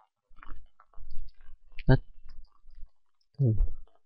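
Computer keyboard keys clicking in quick, irregular keystrokes as a few words are typed.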